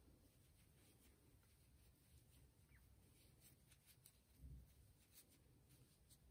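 Near silence: only faint, soft handling sounds as fiberfill stuffing is pressed into a small crocheted piece, with a slightly louder rustle about four and a half seconds in.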